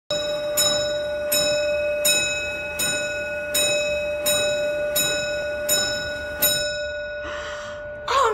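Clock ticking at an even pace of about four ticks every three seconds over a steady bell-like ring, which each tick renews. The ticking stops about six and a half seconds in, followed by a short hiss.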